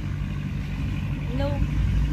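Massey Ferguson 185 tractor's four-cylinder diesel engine running steadily in a low hum.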